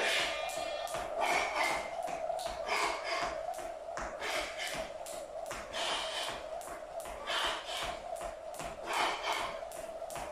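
Skipping rope slapping a tiled floor over and over in a quick, even rhythm, mixed with the light landings of the jumper's feet.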